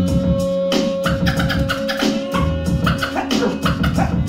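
Hip-hop music with a steady beat, played by a DJ from vinyl records on turntables.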